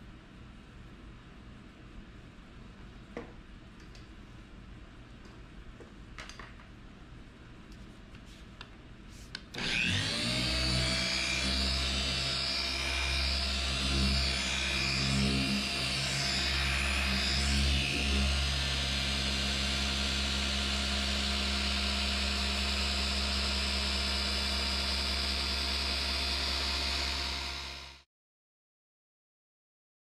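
A few faint clicks, then an electric car paint polisher spins up about ten seconds in. It runs steadily with its foam pad working the paint of a panel, as a machine polish step, and stops abruptly about two seconds before the end.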